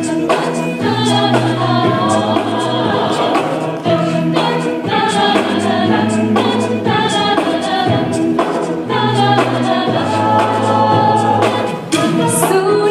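Mixed-voice a cappella group singing in chords over a bass voice holding long low notes, with sharp vocal-percussion hits recurring throughout.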